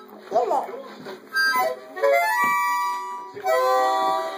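A small child playing a harmonica, blowing and drawing a few separate chords rather than a tune, the longest held for about a second in the middle.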